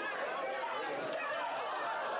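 Crowd chatter: many voices talking over one another at once, at a steady level, as a commotion breaks out among a roomful of people.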